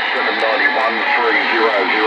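A distant station's voice received over skip on the RCI-2980WX radio, coming through the speaker in a steady hiss of static, thin and hard to make out.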